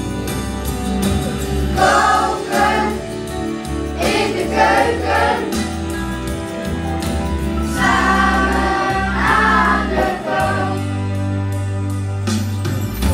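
A group of children singing in chorus over backing music with a steady bass line, in short sung phrases with instrumental gaps between them.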